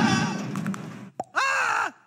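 A cartoon character's held scream trails off over a low machine rumble that fades away; after a short click, a second brief cry rises and falls in pitch.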